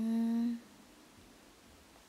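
A young woman's short closed-mouth hum, a thoughtful "mm" held on one steady pitch for about half a second at the start, then faint room tone.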